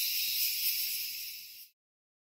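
Steady high-pitched insect chorus, an even shrill hiss that fades out and stops abruptly near the end.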